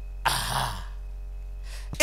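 A man clears his throat once into a microphone: a short rasp about a quarter second in, over a steady low electrical hum.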